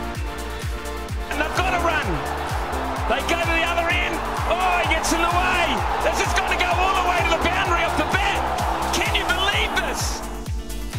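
Background music with a steady thudding beat. From about a second in, the noise of a large cricket stadium crowd cheering and shouting rises over it, then cuts off just before the end.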